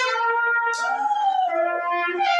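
Solo trumpet playing a melody in held notes, with a rising-and-falling sliding tone about halfway through.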